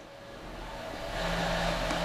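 A steady mechanical hum with hiss, swelling over the first second and then holding steady, with a low steady tone joining it a little after a second in.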